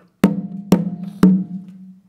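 Conga drums struck by hand in a guarapachangueo rhythm: three sharp, ringing strokes about half a second apart, each leaving a sustained pitched drum tone.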